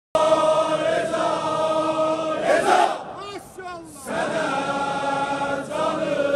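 A large crowd of men chanting an Azeri mourning lament (mersiye) in unison, holding long notes. There is a brief loud burst about two and a half seconds in. For about a second after that the crowd drops away and a quieter single voice sings a short wavering phrase before the crowd comes back in on a held note.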